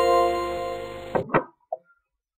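Game background music of plucked-string notes, its last chord fading and then cutting off suddenly about a second in, followed by two quick clicks.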